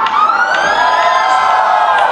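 Siren-like wail sound effect in a dance-routine music mix: one long pitched tone that rises for about a second and then falls away.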